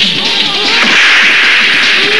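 Dubbed fight-scene sound effects: swishing swings and hard hits, loud and dense, over music.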